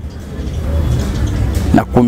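Low, steady rumble of a passing motor vehicle's engine.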